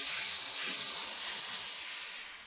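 Compressed air rushing in a steady hiss from an IPA Air Comb 90-degree multi-port blow gun, blowing dust out of a cylindrical air filter.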